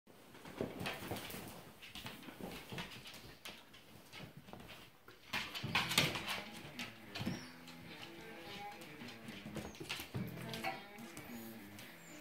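Dogs playing rough on a tile floor: repeated sharp clicks and scuffles from paws and claws, with short dog vocal sounds, loudest about halfway through. Music plays underneath.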